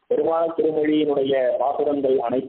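A man's voice in a discourse, speaking in a drawn-out, chant-like way with long held tones.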